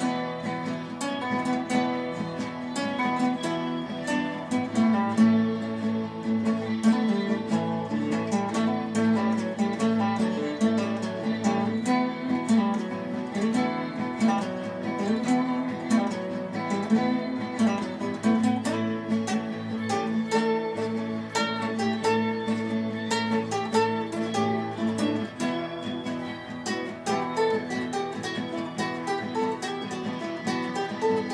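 Instrumental passage of a guitar-based song with no singing: acoustic guitar strumming and picking over bass, at a steady level.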